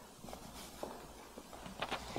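Faint footsteps and a few small knocks, irregular and spaced about half a second apart, over a low steady hum.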